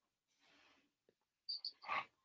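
Mostly quiet, with faint room noise; near the end, a few soft mouth clicks and an in-breath from a person about to speak.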